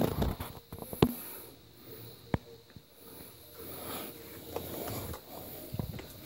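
Handling noise of a phone being moved over bedding: soft rustling, with two sharp clicks about a second and a half apart.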